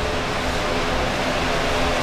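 Electric fan running close by: a steady whoosh with a faint, even hum underneath.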